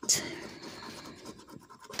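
A coin scraping the latex coating off a paper scratch-off lottery ticket: a run of quick scraping strokes that starts sharply.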